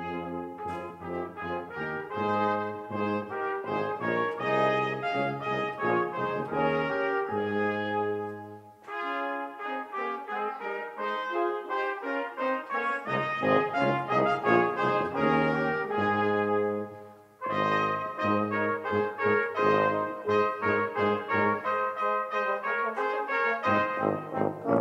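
Brass quintet of two trumpets, French horn, trombone and tuba playing a piece together, starting right at the beginning, with two brief breaks between phrases, about nine and seventeen seconds in.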